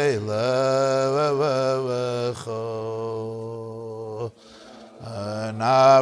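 A man singing a slow Jewish melody (niggun) solo, holding long, gently sliding notes. The singing breaks off briefly about four seconds in and then resumes.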